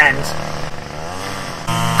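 Small petrol engine of landscaping equipment running steadily in the background, getting louder near the end.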